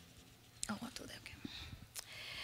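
Faint whispered talk, away from the microphones, with a few short soft clicks of handling.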